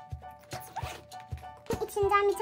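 Zipper of a small handbag being pulled open, over background music with a steady beat.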